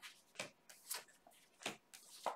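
Tarot cards being dealt one at a time from the deck onto a cloth-covered table: three short, faint swishes and taps as each card slides off the pack and lands.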